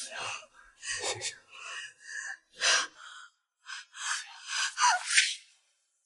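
A woman crying in a run of sharp, ragged gasping breaths, about eight in all, with a short whimper near the end.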